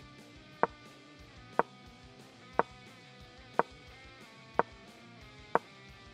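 Six sharp piece-move clicks from an on-screen board game, evenly spaced about a second apart, over quiet background music with held notes.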